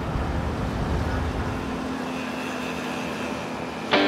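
Road traffic: a car passing by, its low rumble fading about halfway through, over a faint steady hum.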